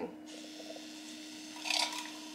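Handheld battery milk frother whirring steadily with its whisk in a glass, mixing hydration drink powder into water. A brief louder swish comes near the end.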